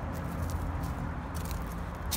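Low, steady outdoor background rumble with a few faint scuffs or clicks.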